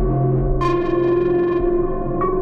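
Ambient synthesizer drone of steady low tones. About half a second in, a bright new note with many overtones enters and slowly fades.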